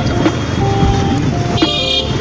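Street traffic heard from a two-wheeler riding slowly through a crowded road: a steady engine and road rumble with wind noise. A short high tone sounds near the end, and background music runs under it.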